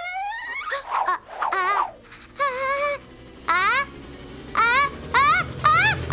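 A cartoon cat character's voice: a string of short gasping calls, each rising in pitch, coming closer together near the end. It is the wind-up to a sneeze. A low rumble builds underneath in the last couple of seconds.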